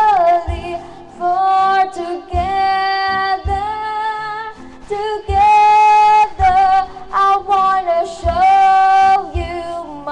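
A woman singing long held notes over music with a low beat that falls about once a second.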